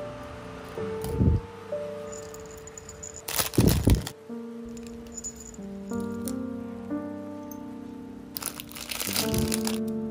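Soft background music with long held notes, over handling noise from acrylic keychains and their metal rings: short noisy bursts about a second in, a louder one around three to four seconds in, and another near the end.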